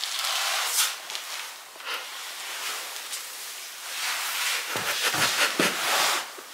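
Rustling of a padded jacket and soft bumps against a wooden floor as a man gets down and lies flat, the bumps clustered near the end.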